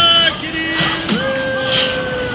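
Voices holding long, steady sung notes: a lower note, then a higher note held from about halfway through.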